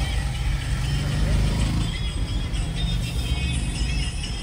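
Steady low engine rumble and road noise heard inside the cabin of a Maruti Suzuki A-Star, a small car with a three-cylinder petrol engine, moving at low speed. Music plays underneath.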